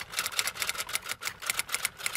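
Typing sound effect: a quick run of typewriter-style key clicks, about seven a second.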